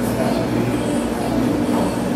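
Steady low rumble and hum of indoor room noise, with no distinct event.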